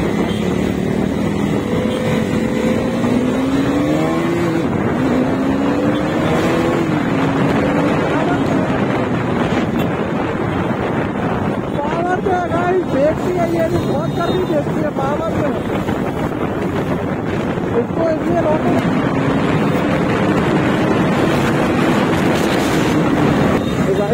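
KTM Duke 390's single-cylinder engine pulling hard through the gears under a power test. Its pitch climbs and then drops back at each shift, with a longer climb near the end.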